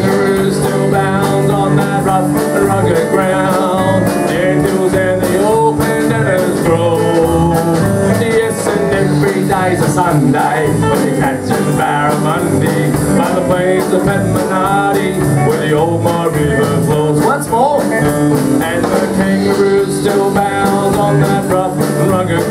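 Live country band playing an instrumental break: strummed acoustic guitar, electric guitar, keyboard, bass and drums, with a lead line weaving over a steady beat.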